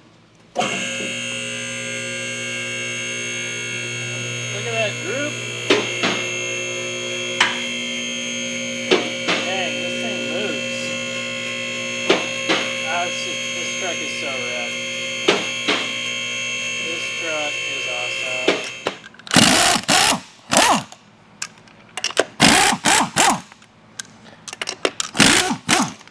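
Two-post vehicle lift's pump motor running steadily for about 18 seconds, with a sharp click every couple of seconds as its safety locks catch while the truck rises. The motor stops suddenly, then a pneumatic impact wrench rattles in several short bursts, taking off lug nuts.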